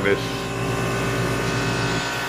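A steady motor hum with several held tones, running unchanged.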